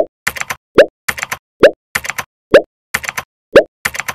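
Title-card sound effects: five short pops, each rising quickly in pitch, coming about one a second, each followed by a quick run of sharp clicks.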